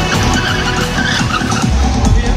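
Motorcycle stunt riding: engine revving and tyres skidding and squealing, under loud background music.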